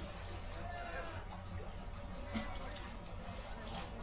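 Quiet room with a steady low hum and faint, indistinct voices in the background.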